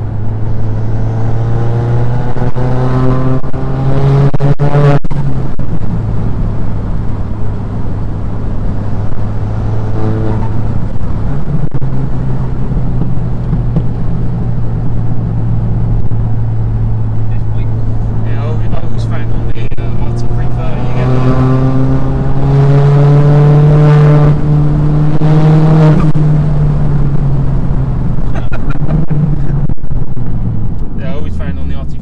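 Ford Fiesta ST Mk7's turbocharged 1.6 EcoBoost four-cylinder with a side-exit exhaust, heard from inside the cabin while driving. The engine note climbs under acceleration twice, once just after the start and again about two-thirds of the way in, with steadier cruising in between.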